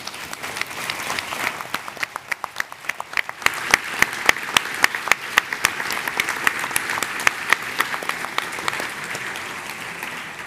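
Audience applauding, with single sharp claps standing out close to the microphones. The applause grows louder about three seconds in and fades near the end.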